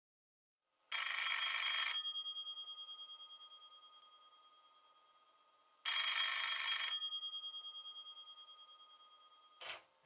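Telephone bell ringing twice, each ring about a second long, about five seconds apart, its bell tones ringing on and fading after each ring. A brief sharp click comes just before the end.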